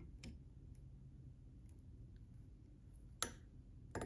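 Faint small clicks of a wire whip finisher tool being worked around tying thread at a fly-tying vise. A sharper single click comes about three seconds in.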